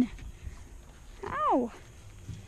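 Dog whining: the tail of one call falls away at the start, and another short call rises and falls about a second and a half in.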